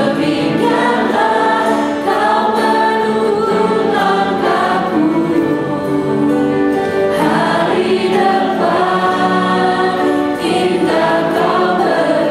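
Worship singers with microphones singing an Indonesian-language hymn together, accompanied by piano and keyboard.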